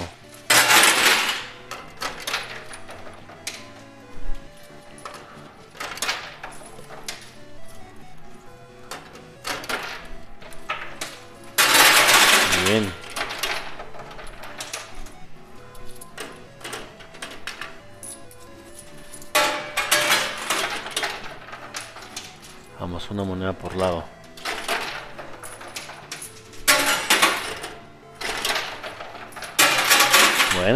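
Coin pusher machine with coins clinking and spilling in repeated loud bursts as they are shoved over the ledge, over a steady background of music and voices.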